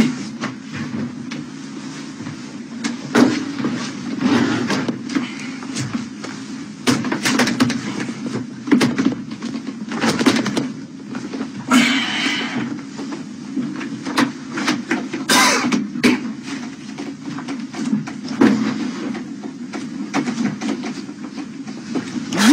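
Irregular knocks and thuds of someone banging and pushing on a stalled elevator's closed metal doors, over a steady low hum.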